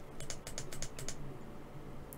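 Computer keyboard being typed on: a quick run of about eight keystrokes in the first second, then a few fainter ones.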